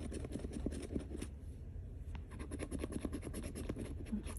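A coin scraping the scratch-off coating off a paper lottery ticket in rapid, short back-and-forth strokes.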